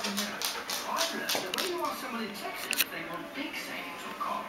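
A dog's claws clicking on a hardwood floor as it walks: a quick, uneven run of light ticks.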